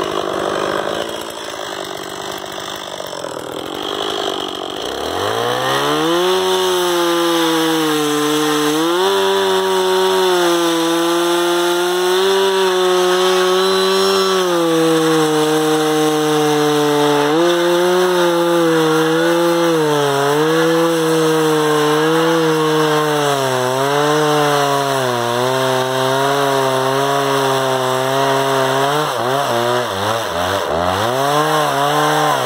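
Chainsaw running quietly at first, then revved up about five seconds in and held at high speed while it cuts into an upright wooden log. Its pitch sags and recovers again and again as the chain works through the wood.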